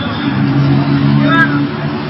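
Street traffic: a motor vehicle's engine running steadily, with a voice calling out briefly near the middle and other voices in the background.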